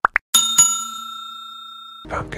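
Two quick rising clicks, then a bright bell ding that rings on and slowly fades: the click-and-notification-bell sound effect of a subscribe-button animation.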